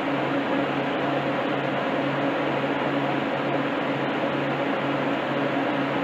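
Steady hum and air rush of walk-in freezer refrigeration fans running, unchanging throughout.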